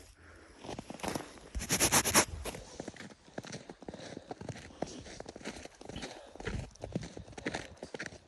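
Footsteps in fresh snow at a walking pace, an uneven run of soft crunches, with a brief louder rustle about two seconds in.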